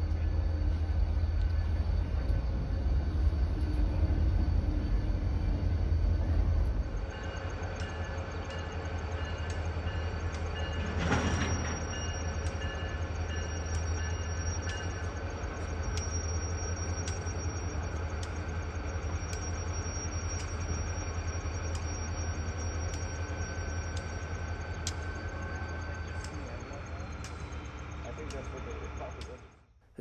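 Cable train of reel flatcars and a caboose rolling slowly along the track: a steady low rumble at first, then quieter rolling with light regular clicks about once a second and a thin steady high tone. A brief louder rush comes about eleven seconds in.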